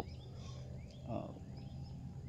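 Quiet outdoor garden ambience with faint, scattered bird chirps over a low steady hum, broken by a man's soft hesitation 'uh' about a second in.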